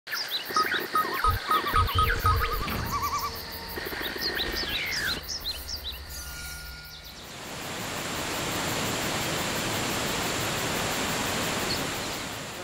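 Intro sting for an animated logo: electronic beeps, chirping pitch sweeps and a few low bass hits over the first seven seconds. These give way to a steady rushing wash of noise, like falling water, that lasts to the end.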